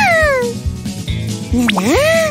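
A cartoon character's wordless, cooing vocal sounds over light background music: a falling 'ooh' at the start, then a rising one near the end.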